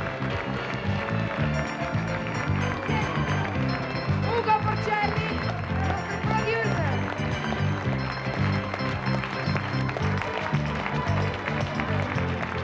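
Upbeat music with a steady bass beat, with voices heard over it.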